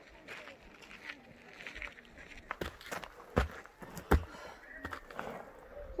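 Three sharp knocks a little under a second apart, over faint voices.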